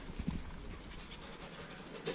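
Faint rustling of a paper seasoning packet being shaken over a roasting pan of raw vegetables, with a few light taps near the start.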